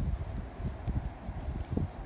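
Wind buffeting the phone's microphone: an uneven low rumble that rises and falls.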